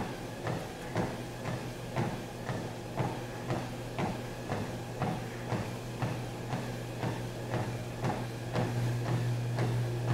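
Footsteps on a Sole F89 treadmill belt, about two footfalls a second, over the treadmill's steady low motor hum. The hum grows louder near the end as the deck rises toward full incline.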